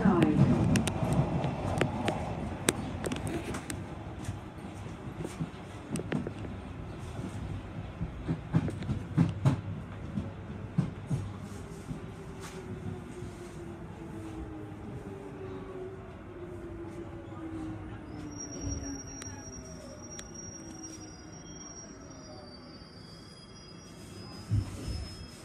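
Jubilee line tube train slowing into a station. The running rumble and wheel knocks over the rail joints fade, while a motor whine falls slowly in pitch as the train brakes. A thin, high, steady whine joins in about three-quarters of the way through.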